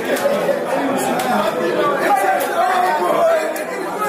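Chatter of a group of men talking over one another, with no single voice standing out.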